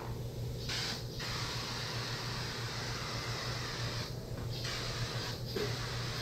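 Hand-held compressed-air spray gun hissing in bursts as its trigger is pulled and released, the longest burst about three seconds, over a steady low hum.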